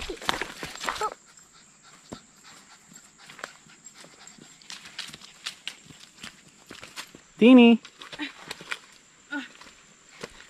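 Footsteps crunching through leaf litter and twigs on a forest floor, a scatter of small clicks and snaps. A louder vocal sound fills the first second, and there is a short voiced "uh" about seven and a half seconds in.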